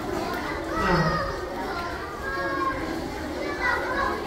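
A crowd of schoolchildren chattering, many young voices overlapping at once with no single speaker standing out.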